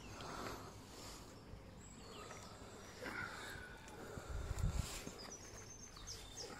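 Quiet outdoor background noise with a few faint, high bird chirps near the end and a brief low thump a little past the middle.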